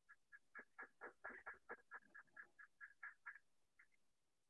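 Faint animal calls: a quick run of about sixteen short, sharp calls, roughly five a second, that stops about three and a half seconds in, followed by two fainter calls.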